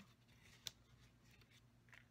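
Near silence, with one faint short click about two-thirds of a second in: a piercing tool pressing down the centre of a paper daisy on a pierce mat.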